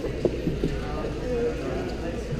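Background chatter of people in a large hall over a steady low room hum, with one sharp knock about a quarter of a second in.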